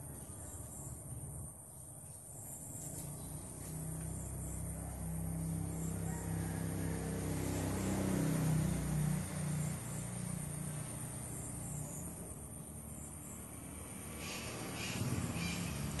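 A low engine hum that grows louder to a peak about halfway through, then fades away.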